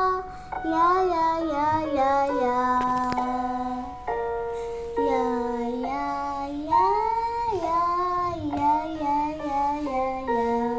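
A young boy singing, holding long notes and sliding up and down between pitches.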